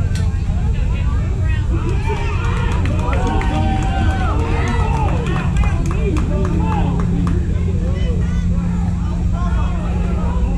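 Overlapping voices of players and spectators at a youth baseball game, with high-pitched shouts and calls, busiest in the middle, and a few sharp clicks. A steady low rumble runs underneath.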